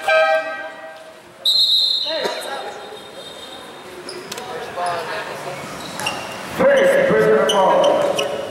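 A referee's whistle blows one long, high, steady note about a second and a half in and fades over the next couple of seconds, echoing in the gym. A basketball bounces on the court, and loud shouting from players and spectators starts near the end.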